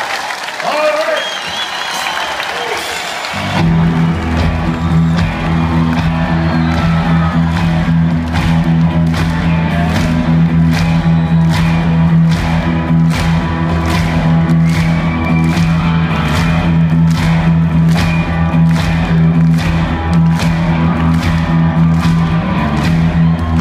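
Arena crowd cheering and applauding, then about three and a half seconds in a live rock band starts up: a sustained low chord with a steady beat of about two hits a second, with the crowd still audible.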